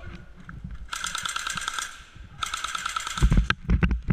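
Airsoft replica firing two bursts of rapid full-auto fire, each just under a second long, the shots a quick even patter over a steady whine. Heavy low thumps follow near the end.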